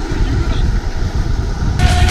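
Wind rushing and buffeting over an action camera's microphone, with the rumble of skateboard wheels rolling on asphalt at downhill speed: a loud, deep, fluttering roar. Music cuts back in near the end.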